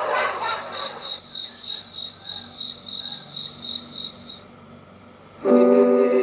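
Crickets chirping in a steady pulsing trill, about four pulses a second, fading out about four and a half seconds in. Near the end an acoustic guitar chord is strummed.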